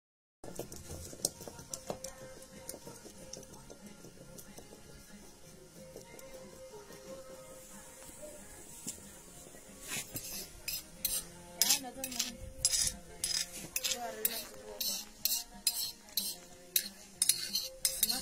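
Quiet rubbing of a rocking grinding stone on a stone batán slab as green chili is ground, then from about ten seconds in a metal spoon scraping and clinking against the stone, a quick irregular run of sharp scrapes and taps as the chili paste is gathered up.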